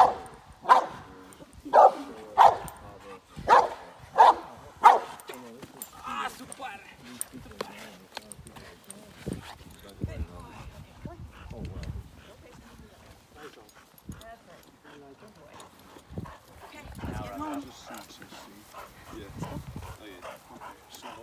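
A Boxer barking at a protection-work decoy: a run of loud, sharp barks, about one every half to one second through the first five seconds, then much quieter.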